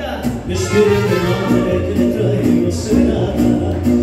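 Mariachi band playing a song live, with a steady bass line of changing low notes under the melody.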